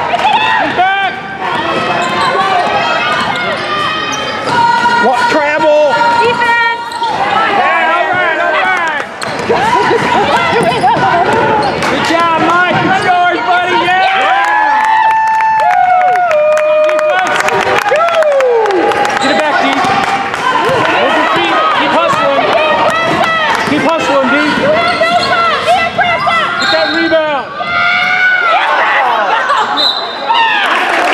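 Basketball being dribbled on a hardwood gym floor during play, with many overlapping voices shouting throughout.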